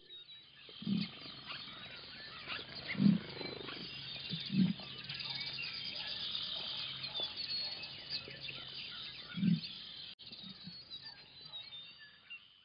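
Wild animal calls: a dense chatter of short high-pitched calls, with a louder low call breaking through four times.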